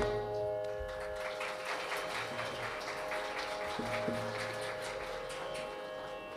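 A steady tanpura drone sustaining its pitches, with a faint speckled haze above it and two soft low drum taps near the middle.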